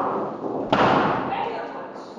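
A single loud thump about two-thirds of a second in, sudden and dying away quickly with some room echo. It comes amid a heated, shouted argument on a low-quality room recording, with a voice trailing off just before it.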